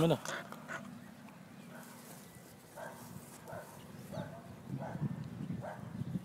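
A small black puppy giving a few short, soft yips and whimpers in the second half.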